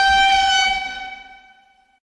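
A single steady-pitched, horn-like tone that swells in, holds, and fades away near the end.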